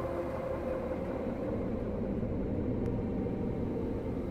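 A steady low rumbling drone with a few faint held tones above it.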